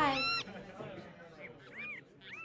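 Animal cries as the music stops: one loud, high, arching pitched cry right at the start, then fainter short arching cries later on.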